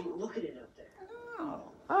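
A dog whimpering quietly, with one short rising-and-falling whine a little past the middle.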